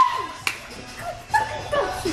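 Young women giving short high-pitched yelps and laughs, with one sharp click about half a second in.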